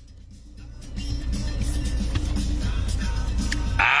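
Low, steady rumble of a motor vehicle, heard from inside a car, building up about a second in over quiet background music. It ends with a man's short "ah" after a drink.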